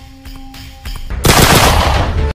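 Intro music with a ticking beat and held tones, cut through about a second in by a loud gunshot sound effect that lasts about a second as the bullet strikes the target.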